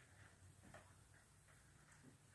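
Near silence with a few faint soft ticks from a baby's doorway jumper as it bounces on its straps.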